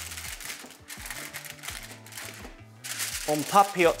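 Aluminium foil crinkling in quick, irregular crackles as its edges are folded and crimped shut into a steaming parcel, over background music with a bass line.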